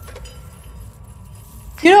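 A telephone's ringing cuts off with a faint click as the handset is lifted, followed by a low hum. A woman's voice starts near the end.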